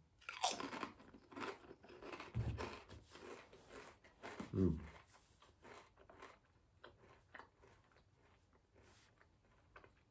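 A kettle-cooked potato chip bitten with a sharp crunch about half a second in, then chewed with crisp crunching that thins out and dies away over the following seconds. A short closed-mouth "mm" comes partway through.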